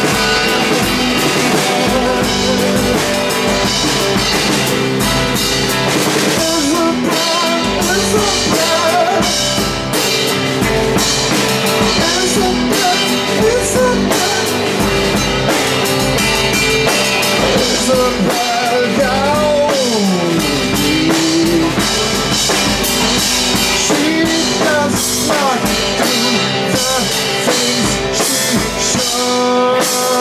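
Live rock band playing: drum kit with cymbals and bass drum driving a steady beat under electric guitars, whose lines bend and glide in pitch.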